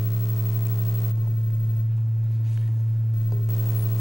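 Steady low electrical hum on the sound system, briefly buzzier in the first second and again near the end.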